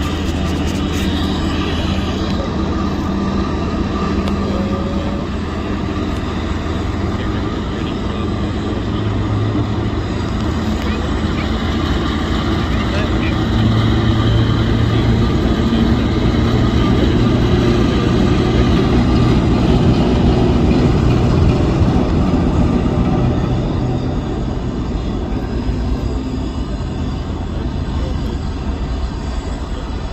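Diesel shunter's engine running as it hauls a rake of coaches slowly past beneath, a steady low drone that grows louder near the middle and eases off towards the end.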